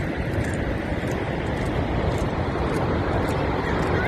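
Steady roar of Horseshoe Falls: a dense, even rushing noise, heaviest in the deep range.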